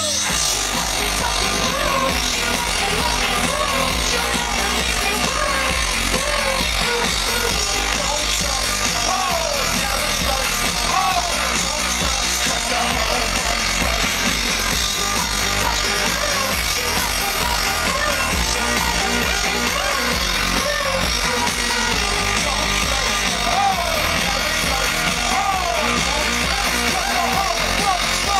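Loud live electropop music from a concert sound system, with a steady beat and heavy bass, recorded from within the crowd.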